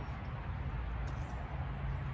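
Low steady outdoor background rumble with a faint hiss over it; no clear snip or cut is heard.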